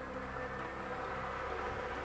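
Lottery drawing machine running, a steady buzzing hum as it mixes the numbered balls in its transparent urn.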